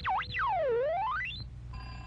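Cartoon sound effect: a whistle-like tone swoops down and back up twice in quick succession, then once more slowly and deeper, rising high again and stopping about one and a half seconds in.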